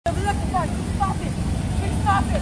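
A high-pitched voice giving short, bending cries with no clear words, over a steady low rumble of city street traffic.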